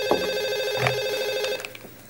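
Electronic telephone ring: one warbling ring lasting about a second and a half, then cut off.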